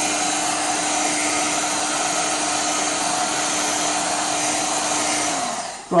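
Electric heat gun running steadily, a blowing rush with a fan hum, as it shrinks heat-shrink tubing onto a cable. It is switched off near the end and its hum drops and dies away.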